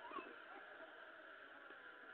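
Near silence: room tone, with a very faint short squeak just after the start.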